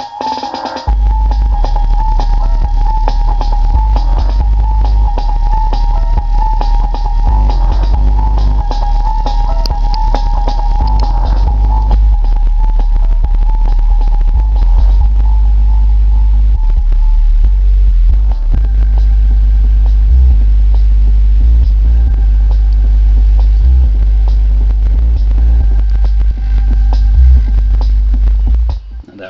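JL Audio 12W6 12-inch subwoofer playing bass-heavy music loud, the deep bass starting about a second in and running on until it cuts off right at the end. It is driven at about 100 to 120 watts RMS and plays cleanly, a sign that the speaker is good and not locked up.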